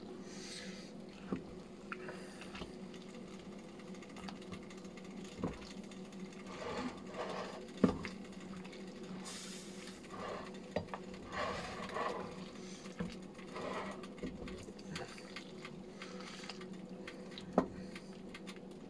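Wooden spoon stirring noodle soup in a stainless steel pot, with soft sloshing and a few sharp knocks of the spoon against the pot, the loudest about eight seconds in and near the end. A steady low hum runs underneath.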